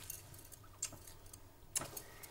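A few faint, brief smacks and clicks as one woman kisses another on the cheeks: one at the start, one just under a second in, and a stronger one near the end.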